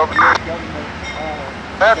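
A railroad two-way radio gives a short burst of squelch hiss as one transmission ends. The steady low rumble of the waiting Amtrak train's idling locomotives follows, and the next radio call starts near the end.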